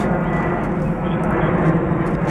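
An airplane flying overhead: a steady, loud noise of its engines.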